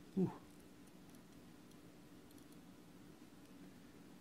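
A few faint light clicks of metal tweezers on the freshly fired kanthal coils of a rebuildable atomizer, over a low steady hum. A short voice sound comes just after the start.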